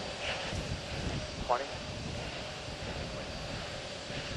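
Steady background hiss and hum on the countdown broadcast audio, with a couple of faint, indistinct voice fragments, once near the start and again about a second and a half in.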